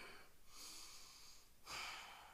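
A man's faint breathing through the nose, with a slightly louder breath near the end.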